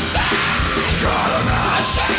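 Rock band playing live at full volume, with a voice shouting into the microphone over the band.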